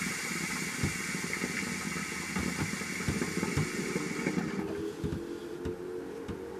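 Shisha water pipe bubbling as two people draw smoke through it: an irregular low gurgle with a rushing hiss over it. The hiss drops away about four and a half seconds in, while the bubbling runs on more weakly.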